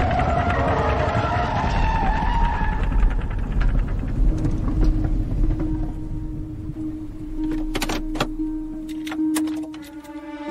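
Radio-drama sound effects of a car accident: a car swerving off the road as its worn right-front tire gives out, with a loud wavering noise in the first few seconds over a low rumble that dies away. A steady held tone follows, with a few sharp knocks near the end, under dramatic music.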